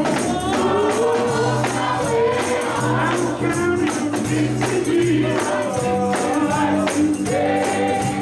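Live gospel music: several singers on microphones singing together, backed by electric guitar, sustained bass notes and a steady percussion beat.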